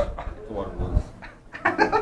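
Men's voices: low talk, then a short, high-pitched burst of laughter near the end.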